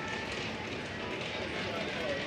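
Faint voices in the background over a steady outdoor street hum, with no single loud event.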